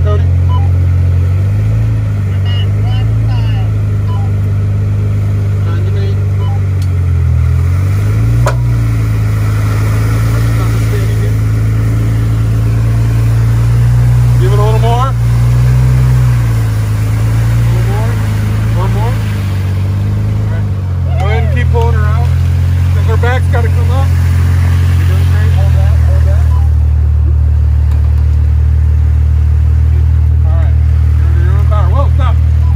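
Jeep engine running under load during a mud recovery on a tow strap, a steady low drone whose pitch shifts a few times as the revs change. Faint shouting voices come through over it in the second half.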